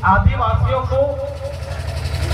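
A man's speech amplified through a microphone and loudspeaker, pausing about a second in, with a steady low hum underneath.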